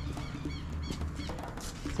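A bird chirping over and over, short high arching notes about two or three a second, over a low steady rumble.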